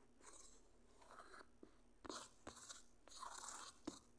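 Faint scratching of a stylus drawing short strokes on a tablet screen, with a few sharp taps in between.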